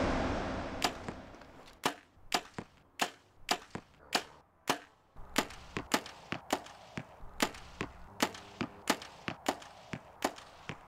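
A run of sharp, short clicks and snaps, about two a second and coming quicker in the second half, after a whoosh that fades away over the first second.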